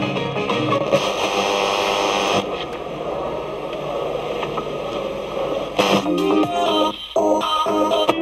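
Silver ST3200 radio-cassette recorder's radio being tuned by hand through its speakers. Music from one station gives way about two seconds in to a stretch of noisy, hissy reception, then choppy snatches of other stations with a brief dropout near the end.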